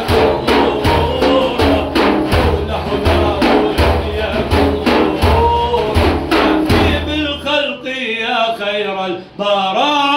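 Large daf frame drums struck by hand in a steady rhythm, about three strokes a second, under a man singing a devotional naat. About seven seconds in, the drums stop and the voice carries on alone in sliding, ornamented phrases, ending on a held note.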